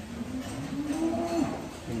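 A dairy cow mooing: one long call that rises in pitch and then drops off.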